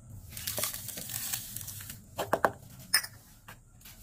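Sand being poured into a cut plastic bottle: a hiss of falling grains for about two seconds, then a few sharp clicks and knocks.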